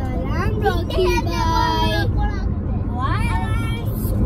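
Young girls' high-pitched voices, with rising calls and one long held sung note about a second in, over the steady low rumble of the car they are riding in.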